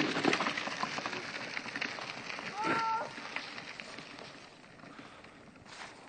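Crunching footsteps on a snowy road, thinning out and fading away over the first four seconds, with one short distant call a little before halfway through.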